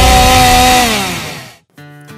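Chainsaw engine running at high revs, its pitch dropping away about a second in before it cuts off abruptly. Quiet music starts just before the end.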